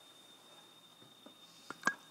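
A pause on a video-call audio line: faint background hiss with a thin, steady high-pitched electronic tone, and a few soft clicks near the end.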